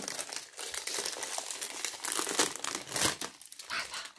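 Perfume packaging handled by hand while unwrapping a perfume box: a dense run of small crackles and rustles that thins out near the end.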